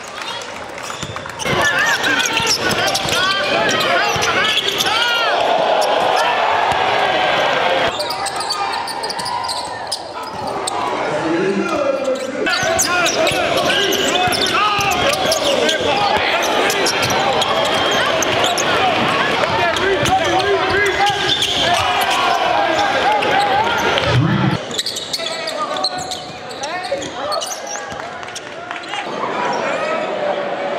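Basketball game sound in a gym: a ball being dribbled on the hardwood floor, with crowd noise and voices in a large echoing hall. The sound changes abruptly several times as short game clips are cut together.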